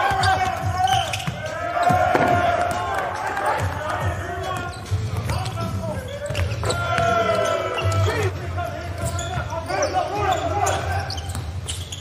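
A basketball being dribbled on a hardwood court, heard as repeated short bounces, with players calling out on the court.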